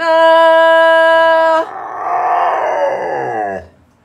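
A person holds one long, steady sung note, and a dog howls along to it: a long, wavering howl that slides down in pitch and dies away about three and a half seconds in. The dog was trained to sing along like this.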